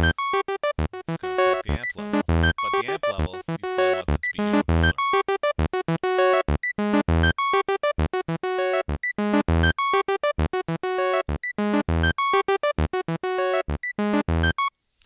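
Thor synthesizer on its init patch playing a fast sequenced line of short, separate notes that jump between pitches, driven by the Matrix step sequencer.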